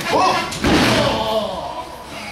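A wrestler's body thrown down onto the ring mat, landing with one loud slam a little over half a second in.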